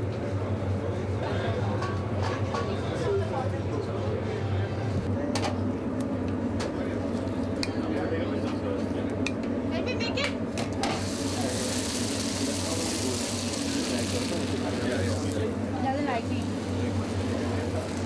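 Background chatter of a crowd in a kitchen over a steady low hum, with a few clinks. About eleven seconds in, a hissing sizzle from hot oil runs for about four seconds.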